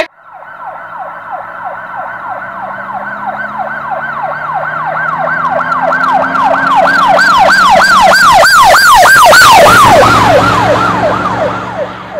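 A siren on a fast repeating up-and-down yelp, about two to three cycles a second, growing louder to a peak about nine to ten seconds in, then dropping in pitch and fading as it passes.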